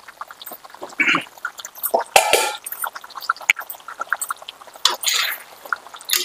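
Thick dry-fish curry simmering in an open pot, its bubbles bursting in a scatter of small irregular pops, with a few louder gurgling pops.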